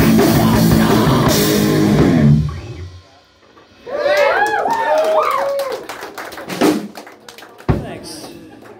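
A rock band with drum kit and distorted guitar plays loudly, then the song ends abruptly about two and a half seconds in. After a short hush, the crowd whoops and claps sparsely, with a single low thump near the end.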